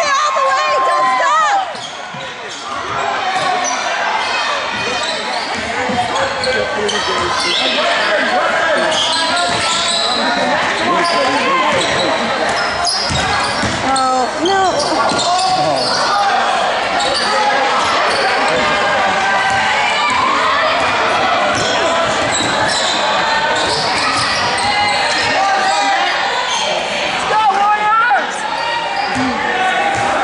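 A basketball dribbled on a hardwood gym floor during live play, under the overlapping chatter and calls of spectators and players, all echoing in a large gymnasium.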